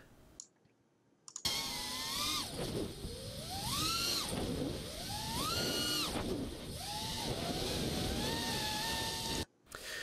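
Miniquad's brushless motors whining in flight, starting about a second and a half in. The pitch sweeps steeply up on hard throttle punches (pops) twice, a couple of seconds apart, and drops back as the throttle is backed off, then settles to a steadier whine.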